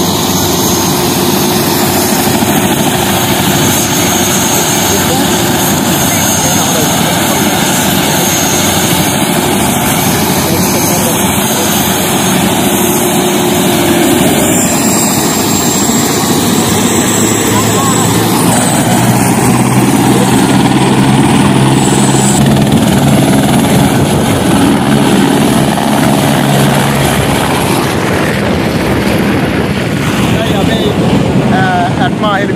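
Helicopter running on the ground close by: a loud, steady engine-and-rotor noise with a thin high whine over it.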